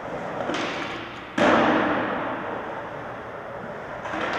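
A skateboard: a light clack about half a second in, then a loud landing impact about a second and a half in, followed by wheels rolling that slowly fades.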